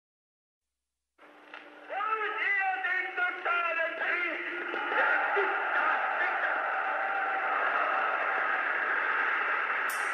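After about a second of silence, a voice with a thin, radio-like sound starts up and thickens into a dense, steady layer as the track goes on. A sharp click comes near the end.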